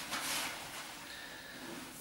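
A brief soft swishing hiss in the first half second as a cloth is wiped across bare skin, then faint room tone.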